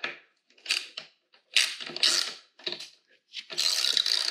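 Socket ratchet wrench clicking in four short spells of strokes, snugging a bolt on a motorcycle's rear brake caliper bracket without yet fully tightening it.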